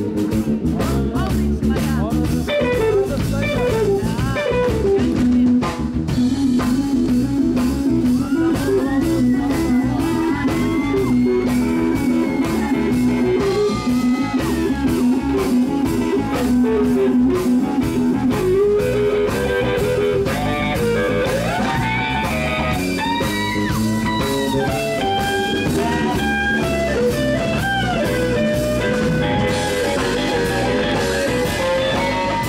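Live blues-rock band playing an instrumental passage: an electric guitar lead with bending notes over electric bass and drum kit.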